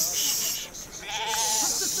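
A sheep bleats once, a single held call of under a second starting about a second in, over background chatter of many voices.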